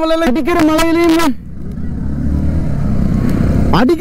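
A motorcycle under way, a low rumble of engine and wind that grows louder, heard from a camera on the bike, between a man's spoken words at the start and end.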